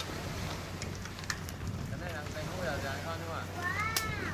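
A steady low motor hum runs throughout under faint voices that start about halfway in. Near the end comes one short, high, arching voice sound.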